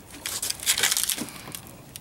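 Leather welding gloves rustling and small steel pieces scraping and clicking as they are set between the electrodes of a homemade spot welder. It is a crackly, scratchy stretch lasting about a second, starting shortly after the beginning.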